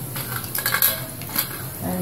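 A few sharp metal clinks on a stainless-steel pressure pan as whole spices are put into the hot oil and ghee, over a faint sizzle.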